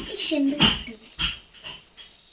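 A brief voice sound, then two or three sharp knocks or rustles, the last ones fainter.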